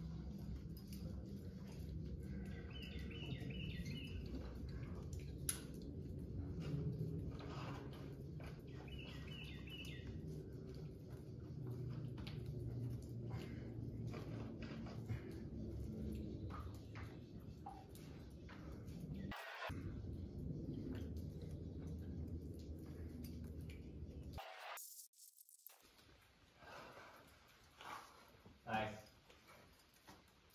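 Outdoor ambience: a songbird gives a short run of quick chirps twice, over a steady low rumble with a few faint clicks. The sound drops out briefly twice near the end.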